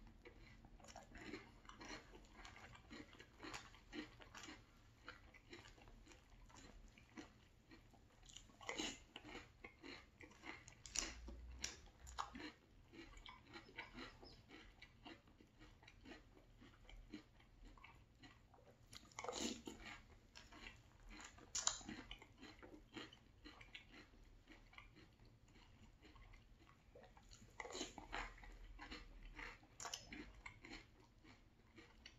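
Close-up chewing of Very Berry Cheerios in milk: quiet, steady crunching made of many small crisp clicks, with a few louder crunchy moments roughly every ten seconds.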